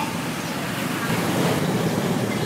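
Motor scooters passing close by one after another, their engine noise swelling to its loudest about a second and a half in, over a background of chatter.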